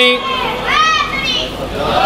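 A man's drawn-out word ends just after the start, followed by two short, high-pitched voice calls that rise and fall, over the hall's background murmur.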